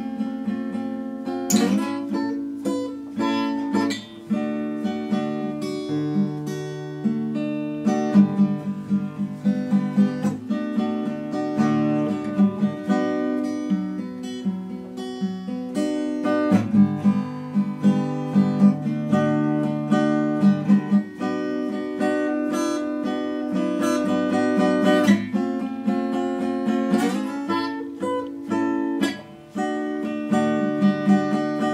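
Takamine acoustic guitar played solo: picked notes and ringing chords over a repeating bass pattern, with a few hard strummed chords now and then.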